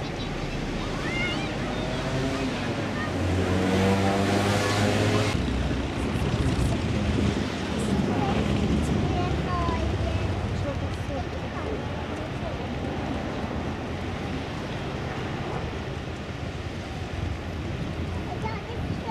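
Wind on the microphone over sea ambience, with indistinct voices and the low hum of a motorboat engine, somewhat louder in the first half.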